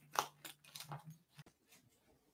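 Faint rustling and several small clicks from someone changing into clothes, with a low steady hum during the first second or so.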